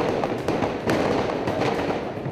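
Dense crackling of distant gunfire, with one sharper report about a second in.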